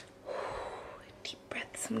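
A woman's long breathy exhale, close to the microphone, like a sigh or a whisper without voice. It is followed by two short faint clicks near the end.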